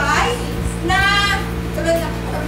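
A high-pitched voice, with its strongest, drawn-out sound about a second in, over a steady low hum.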